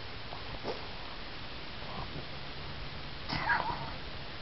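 Faint small sounds from a Boston Terrier rubbing its face and tongue along a carpet, with a short, louder sound that rises and falls in pitch a little over three seconds in.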